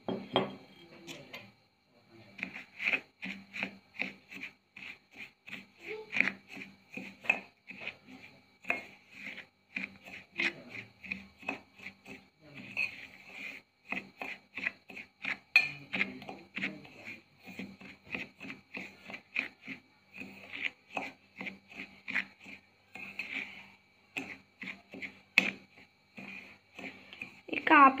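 A metal spoon stirring a wet paste in a stainless steel bowl, with repeated clinks and scrapes against the bowl, a few a second.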